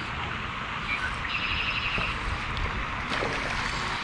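Steady outdoor wind noise on the microphone while a hooked largemouth bass is reeled in, with a brief fine whirring a little over a second in, typical of a baitcasting reel being cranked.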